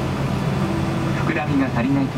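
Steady low drone of an airliner cabin during pushback, a Boeing 777-200ER's air and engine noise. A cabin safety announcement voice speaks over it in the second half.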